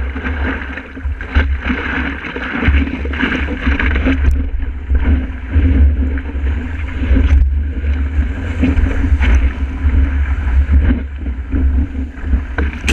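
Wind buffeting the microphone of a camera mounted low on a stand-up paddleboard, a heavy continuous rumble, over water rushing and splashing against the board as it rides broken whitewater. Brief splashes come through now and then.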